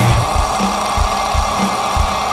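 Metalcore band music in which the heavy low guitar drops out right at the start. A single high electric-guitar note is then held over sparse low drum hits.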